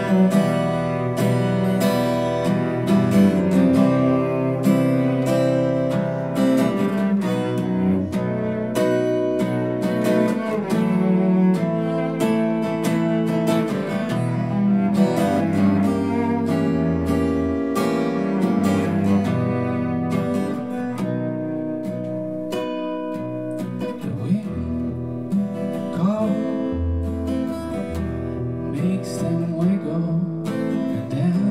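Instrumental passage: an acoustic guitar strummed in a steady rhythm, with a cello holding long low notes beneath it.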